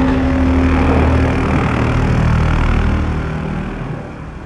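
Outro sound effect: a loud, deep rumbling whoosh with a low hum in its first second or so, fading slowly away.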